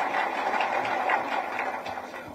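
Applause from a small group of people: a steady patter of hand claps that thins out toward the end.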